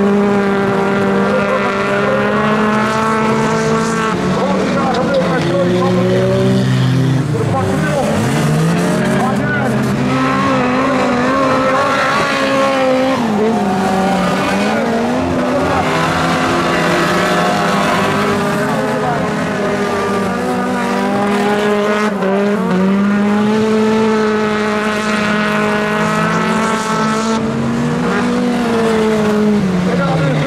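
Several junior-class autocross cars racing on a dirt track. Their engines run hard, the pitch climbing and then dropping back every several seconds as they go round the laps.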